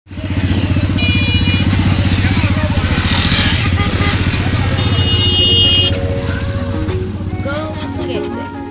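Motorcycle and quad bike engines running together with a fast, even low pulsing, broken by two short high-pitched tones about a second in and again around five seconds in. Music begins to come in near the end as the engines fade.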